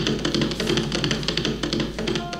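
Background music carried by fast, rhythmic drum strokes.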